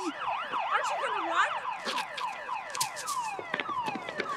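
Police car siren sounding, first in fast up-and-down sweeps, then in repeated falling sweeps several times a second.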